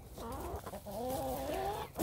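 Laying hens clucking: a soft, wavering, continuous run of calls that fades out just before the end.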